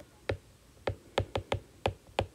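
A stylus tip tapping and clicking on a tablet's glass screen while handwriting, about six sharp ticks at an uneven pace.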